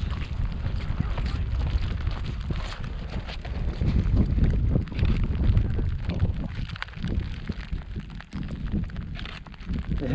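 Wind buffeting the microphone as a gusty low rumble, mixed with crackling rustles of a plastic rain poncho and bag close by.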